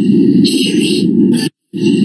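Loud, dense, distorted jumble of many overlapping video soundtracks playing at once, voices and sound effects piled together into a noisy roar. It cuts off abruptly about one and a half seconds in and starts again a moment later.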